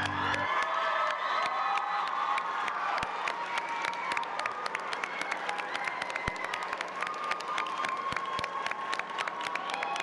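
Audience cheering and applauding: many high-pitched voices hold long shouts over a steady patter of clapping.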